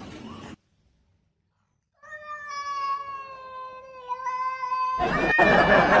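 A cat's long, drawn-out meow starting about two seconds in and holding a steady pitch for about three seconds. Near the end a louder, noisier sound comes in under it and a person laughs.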